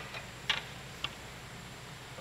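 Two faint short clicks about half a second apart, over a low steady hum, as a piece of stock is loaded onto the length stop's feed table.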